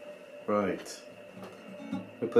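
Acoustic guitar notes ringing softly at the close of a fingerpicked piece. About half a second in, a short spoken word cuts in over the fading strings.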